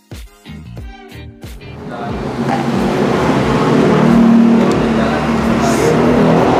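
Background music for the first second and a half. Then a loud vehicle engine noise swells up and holds steady, with no break.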